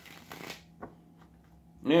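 A deck of tarot cards riffle-shuffled and bridged between the hands, the cards cascading together in a brief rustle in the first half second, then a soft tap about a second in.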